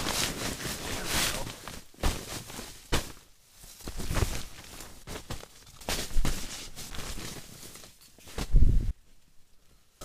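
A tarp being shaken out and spread over a pine-needle ground, rustling and flapping in repeated bursts, with footsteps and a few sharp knocks. A heavy low thump comes near the end.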